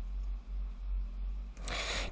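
Low steady electrical hum under a quiet room, with a faint breath near the end.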